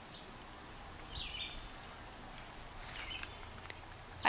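Faint, high-pitched trilling of insects, coming in repeated stretches, over light outdoor background noise.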